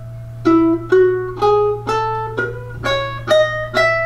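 Concert ukulele played as single plucked notes: an ascending E major scale, eight notes at about two a second, climbing from E to the E an octave above.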